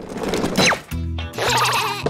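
Cartoon sound effects and children's background music: a swishing whoosh with a falling whistle-like glide, then music with steady bass notes and a wavering, warbling tone from about a second in.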